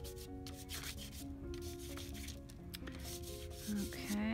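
Chalk pastel stick scraping on paper in a series of short strokes as colour is put down, over soft background music.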